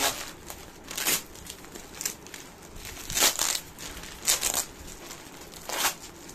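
Thick plastic silage bag crinkling as it is handled and opened, in short bursts about a second apart.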